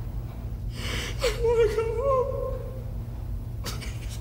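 A man gasps, then lets out one drawn-out, wavering moan lasting about a second and a half, over a steady low hum; a sharp click comes near the end.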